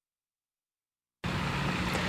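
Dead silence for about the first second, then steady outdoor background noise with a low hum cuts in suddenly: road traffic ambience.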